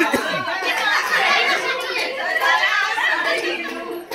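Several women talking over one another at once: a chatter of overlapping voices.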